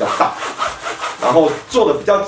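A rasping rustle of nylon rain-jacket fabric rubbed and handled by hands, heard together with a man's speech.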